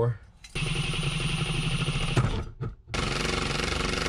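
Cordless impact driver with a drill bit boring holes in eighth-inch steel plate, running in two bursts of about two seconds each with a short pause between, with a fast, even rattle throughout.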